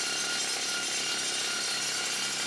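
Pneumatic air-leg rock drill running steadily at full power, its drill steel boring into the rock face of a mine tunnel; a dense, even din with a faint high whistle through it.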